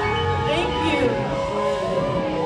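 A woman singing live into a handheld microphone over instrumental accompaniment, her voice gliding through sustained notes.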